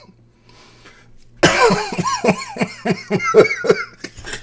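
A man bursting into hard laughter about a second and a half in: a quick run of loud 'ha' bursts, about three or four a second, each dropping in pitch.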